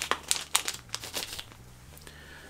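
Clear plastic bag crinkling in the hands as a watch strap is pulled out of it: a quick run of crackles that dies away about a second and a half in.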